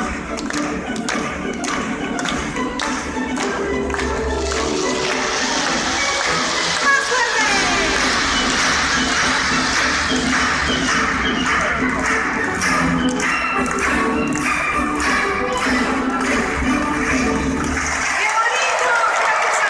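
Aerial fireworks popping and crackling over loud music: a run of sharp bangs, then from about five seconds in a dense crackling, fizzing barrage that dies away near the end.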